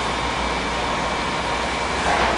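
Steady rushing background noise with a faint thin high tone running through it.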